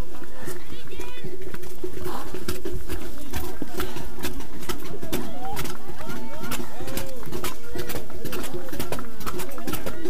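Indistinct voices of nearby trail runners, with a run of short sharp footfalls and knocks as they climb a dirt path and steps.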